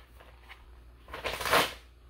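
Paper rustling as the pages of a spiral-bound drawing book are leafed through, with one loud rustle lasting under a second about halfway through.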